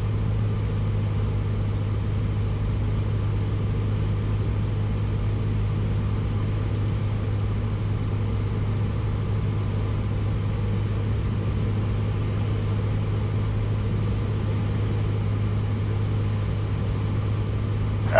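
A single-engine Cessna's piston engine and propeller droning steadily in the cockpit on final approach: a constant low hum with no change in power.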